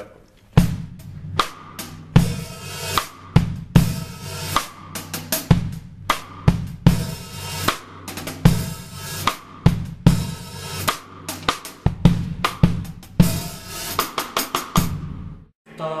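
Drum kit groove with a half-open hi-hat: a heel-down shift of weight on the pedal lets the two hi-hat cymbals touch loosely, giving long rustling washes that ring on between the drum strokes. The playing stops just before the end.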